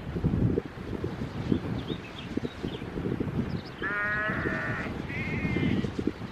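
Two animal calls over wind noise on the microphone: a longer, wavering call about four seconds in, then a shorter, higher one about a second later.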